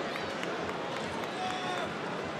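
Football stadium crowd noise: a steady hubbub of many voices from the stands, with a few single shouts or calls standing out.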